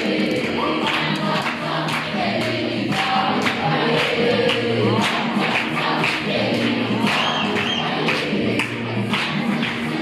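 A group of voices singing a song in chorus, with a regular beat of sharp strokes under it.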